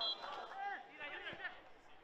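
Faint voices and chatter of players and spectators at a football pitch, heard as the match's ambient field sound.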